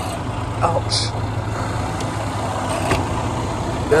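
Semi truck's diesel engine idling with a steady low hum. A short, sharp scraping noise comes about a second in.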